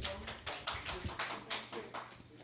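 A quick run of light, irregular taps, about four or five a second.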